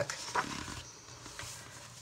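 A page of a colouring book being turned by hand, paper rustling, with one short flap about half a second in and fainter rustling as the page settles.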